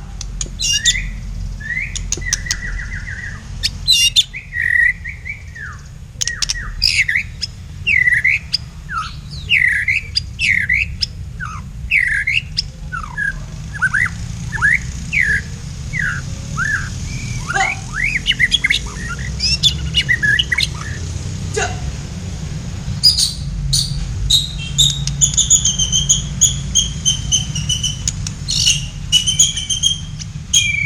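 Caged songbirds in a song duel, a black-tailed murai batu (white-rumped shama) and a kapas tembak: a varied string of quick whistles, swooping notes and chirps, turning near the end into a fast, rapidly repeated phrase. A steady low rumble runs underneath.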